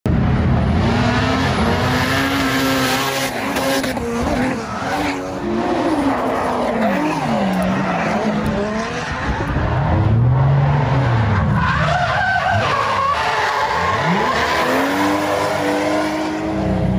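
Drift cars sliding through a corner at full throttle: engines revving up and down again and again, with tyre squeal and the rush of spinning tyres.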